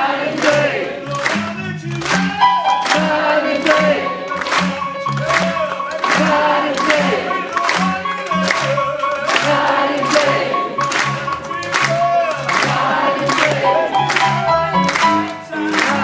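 Live blues band playing with drums on a steady beat, bass and keyboard, which holds a long note through most of the passage, while many voices sing along together.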